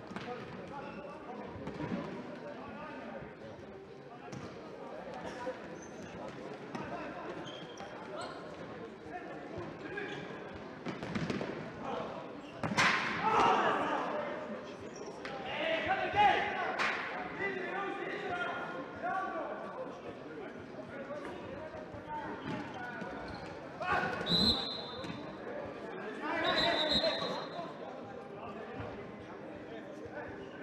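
Indoor futsal match in a sports hall: the ball is kicked and bounces on the hall floor, while players and spectators shout and call. The sound echoes in the hall. The voices swell louder about halfway through and again a few seconds before the end.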